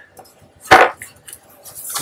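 Printing plates, which look like masonite, clacking against one another as one is lifted from a stacked pile: one sharp clack a little under a second in, then a few light taps.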